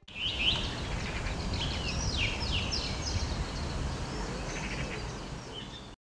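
Small birds singing in short phrases of high chirps and quick trills, heard over a steady low rumble of outdoor background noise.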